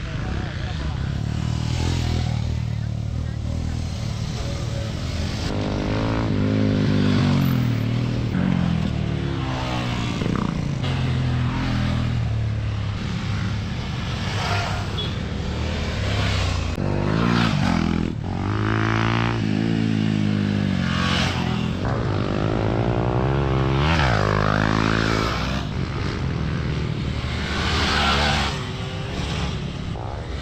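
Off-road motorcycles riding past one after another on a dirt track, their engines revving up and down through throttle and gear changes. The engine note rises to peaks about a quarter of the way in and again past the middle.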